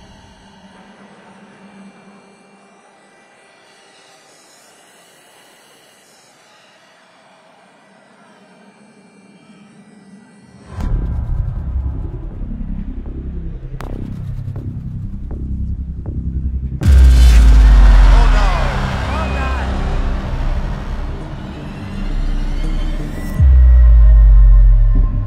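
Dramatic background music: quiet, held tones for about the first ten seconds, then a loud, deep section cuts in suddenly. It gets louder again about halfway through and once more near the end.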